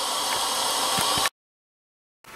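A steady hiss that cuts off suddenly a little over a second in, leaving dead silence.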